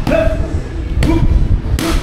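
Three strikes landing with sharp slaps on Muay Thai pads held by a trainer: one at the start, one about a second in and one near the end. Each strike comes with a short vocal shout.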